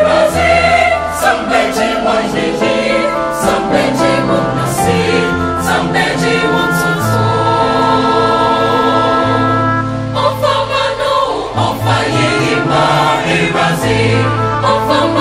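Mixed choir of men and women singing in several-part harmony, with a long held chord from about seven to ten seconds in.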